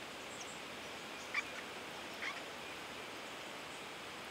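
Two brief, high guinea-pig-like squeaks from young Australian swamp rats, about a second apart, over a faint steady hiss.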